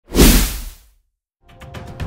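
Whoosh sound effect of a news logo sting: a loud sweep with a deep low end that swells quickly and fades within a second. After a short silence, faint background music comes in near the end.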